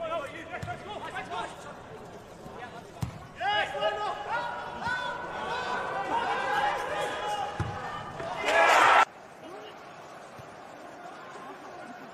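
Footballers' shouts and calls echoing around an empty stadium, with a few dull thuds of the ball being kicked. A loud shout about nine seconds in is cut off abruptly.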